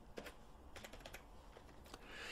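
Faint computer-keyboard keystrokes: a few scattered short clicks as a number is typed in.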